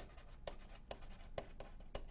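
Stylus writing on a tablet screen: a series of faint short strokes and taps, about three a second, as a word is handwritten.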